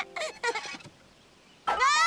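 Background music notes trailing off, a brief hush, then about one and a half seconds in a child's loud cry that rises steeply in pitch and wavers: a yell of fright at being thrown off a seesaw.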